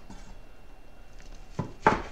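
Two short knocks near the end, the second louder, over quiet room tone.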